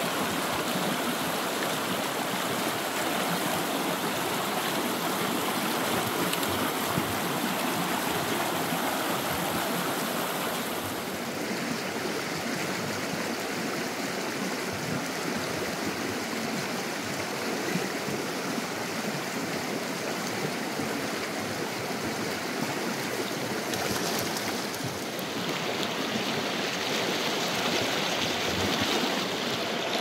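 Small creek flowing over rocks: a steady rush of water that shifts slightly in tone about a third of the way in and again near the end.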